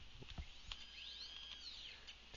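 Faint whine of CNC axis motors jogging, gliding up and then down in pitch as the axes speed up and slow down, with a few light keyboard key clicks in the first second.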